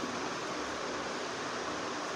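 Steady, even hiss of room background noise, with no distinct event.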